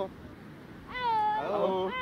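A group of fishermen singing while hauling in a large fishing net. After a short pause, several voices start a new sung phrase together about a second in, gliding up and down in pitch.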